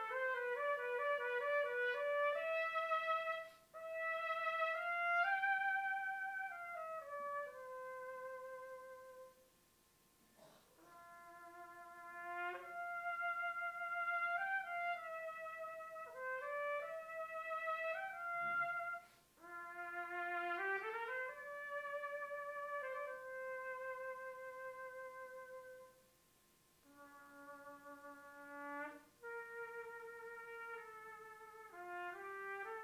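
A solo G trumpet of the piccolo trumpet family playing a lyrical, unaccompanied melody with a singing tone. It plays in phrases of held notes, with short pauses between phrases about a third of the way in, past the middle and near the end.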